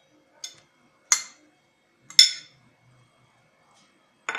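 A small bowl clinking against the rim of a glass salad bowl as orange segments are tipped in: three sharp clinks, the last the loudest.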